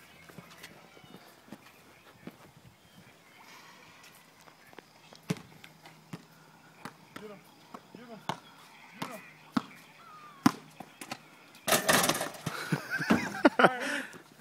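A basketball bouncing and hitting on a concrete court, a few sharp knocks spread out, with faint voices. Near the end there is a louder stretch of noise and voices.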